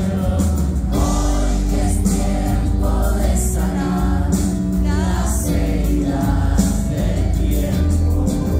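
Live rock band playing loud amplified music through the PA, with drums, bass and electric guitars and voices singing, heard from within the audience.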